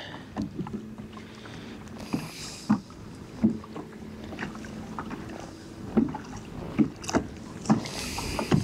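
Pedal-drive fishing kayak under way on calm water: a faint steady hum with water noise along the hull, broken by scattered short knocks and creaks from the hull and gear.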